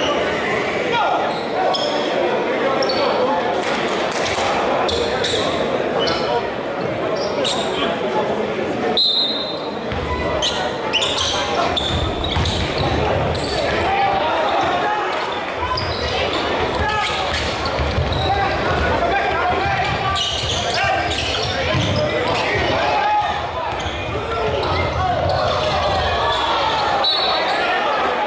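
Basketball game sounds in a large echoing gym: a basketball bouncing on the hardwood floor, with short sharp strokes throughout, over steady crowd chatter, and brief high squeaks about nine seconds in and near the end.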